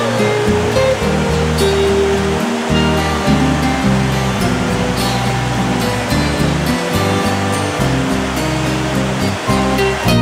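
Mountain stream rushing and splashing over rocks, a steady hiss of running water, under background music with sustained low notes.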